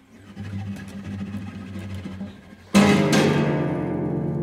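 Two guitars playing a contemporary duet: quiet low notes, then about three-quarters of the way in a sudden loud struck chord, hit twice in quick succession, that rings on and slowly dies away.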